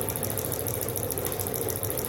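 Homemade magnet motor built on a microwave transformer core, running steadily: a fast even ticking about ten times a second over a low steady hum.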